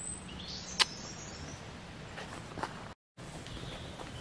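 Outdoor ambience in overgrown woodland with a few faint bird chirps and one sharp click about a second in. The sound drops out completely for a moment about three seconds in.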